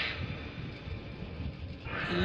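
A pause in a live pop ballad performance: the singing and band drop out, leaving only a quiet low rumble from the hall, the hush before the final chorus comes back in.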